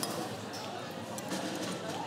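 A few light clicks of a metal utensil against a ceramic bowl as food is eaten, over faint background talk.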